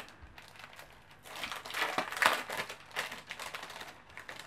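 Eyeliner stencil packaging being handled and opened: a run of small rustles and clicks, loudest about two seconds in.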